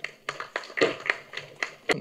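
A handful of sharp, irregular taps and clicks, about seven in two seconds, the last one the strongest.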